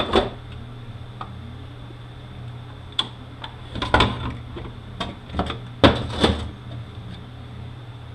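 Metal parts of a 5R55E automatic transmission clinking and knocking as they are handled: a part set down right at the start, then a run of knocks between about four and six and a half seconds in as the next parts are drawn out of the transmission case. A steady low hum runs underneath.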